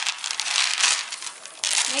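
Strands of red holiday bead necklaces rattling and clicking against each other as they are handled and pulled apart from a tangle. The clicking is dense for about a second, then thins out.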